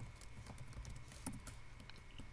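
Faint keystrokes on a computer keyboard as a spreadsheet formula is typed, a handful of scattered taps.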